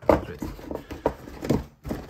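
Cardboard model-kit boxes scraping and knocking against each other as one is pulled out of a stack, with a few knocks about half a second apart.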